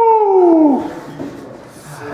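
A person's long, high-pitched wail that holds steady and then falls away less than a second in, followed by quieter room sound.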